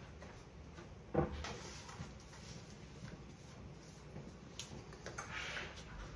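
Soap cutter being cleaned with a plastic scraper: a sharp knock about a second in, a few light clicks, and a short scrape near the end.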